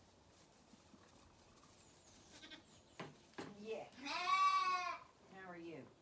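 Zwartbles lambs bleating: a few short calls about three seconds in, then a loud bleat lasting about a second, followed by a shorter, wavering bleat near the end.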